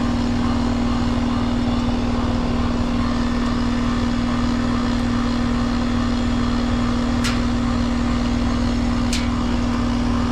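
Outdoor unit of a Rheem heat pump running in heating mode, close up with its panel open: a steady compressor hum over the fan's rush, on a system likely overcharged. Two brief sharp high sounds about seven and nine seconds in.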